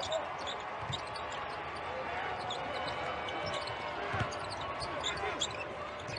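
Live court sound of a college basketball game: a basketball bouncing on the hardwood with a few low thuds, over a steady arena background with faint shouts from players and the bench.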